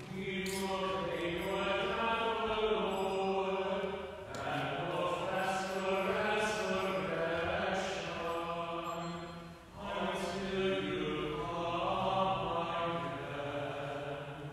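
Liturgical chant sung during Mass, in three long phrases with short breaks about four and ten seconds in.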